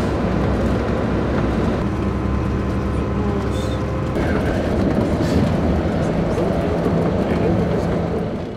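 Steady road rumble heard inside a moving vehicle, with faint voices in the background.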